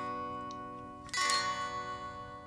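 Yamaha Revstar 502 electric guitar chords ringing out: one chord is already sounding and fading, and a second chord is picked about a second in and left to ring, dying away slowly.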